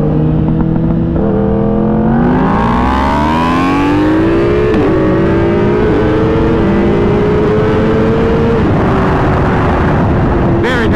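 Inline-four sportbike engine pulling hard under acceleration: its pitch climbs steeply, drops briefly at an upshift about halfway through, climbs again more slowly, then falls away near the end as the throttle eases off, with wind rushing past the onboard microphone.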